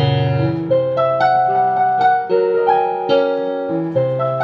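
Piano music: a slow piece of held chords and melody notes, changing about every half second to a second, over deep bass notes.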